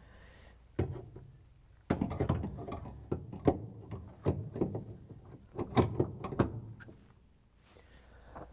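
Irregular knocks, clicks and scrapes of a washer drive motor being handled and set into its metal mounting bracket, starting about a second in, busiest from about two to six seconds, then dying away.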